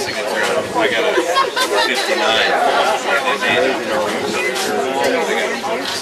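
Several people talking at once: indistinct background chatter.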